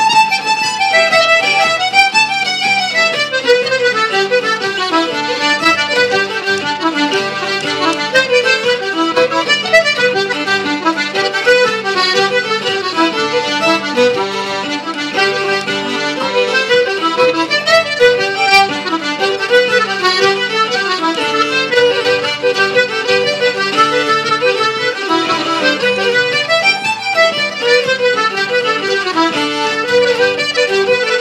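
Traditional instrumental music: fiddle, button accordion and acoustic guitar playing a set of jigs together, with the accordion prominent.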